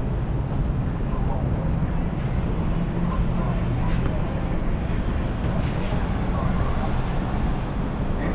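Steady low background rumble, with faint voices now and then.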